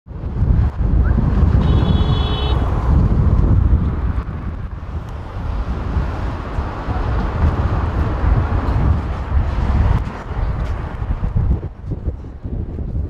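Wind buffeting the microphone with a heavy rumble, over cars driving past on a city street. A brief high beep sounds about two seconds in.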